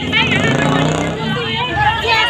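Several people talking over one another, with women's raised voices.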